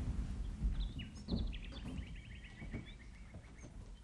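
Small birds chirping, with a rapid run of repeated high chirps from about a second and a half in, over a few soft low thumps.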